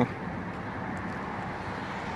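Steady outdoor background noise with no distinct events, a low even hum of the surroundings.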